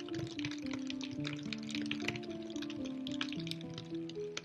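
Rain falling in many small, close drop ticks, mixed with slow, soft instrumental music: a melody of held notes that step to a new pitch about every half second.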